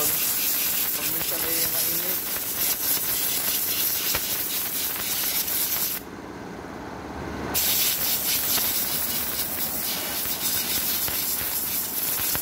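Compressed-air blow gun hissing as it blows dust out of a dirty pleated air filter. The air cuts off for about a second and a half just past the middle, then the blast starts again.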